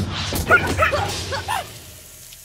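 A cartoon character laughing "ha ha" in a quick run of short, high-pitched syllables, starting about half a second in.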